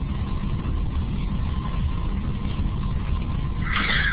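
Steady low rumbling noise with a faint steady tone, from an open microphone on a web-conference audio line. Near the end there is a short rise of higher hiss.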